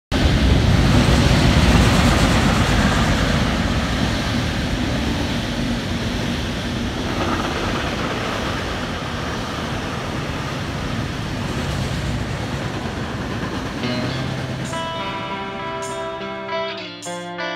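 Container freight train passing on the rails: a steady noise of wheels on track that slowly fades. About two seconds before the end, guitar notes begin the song's intro.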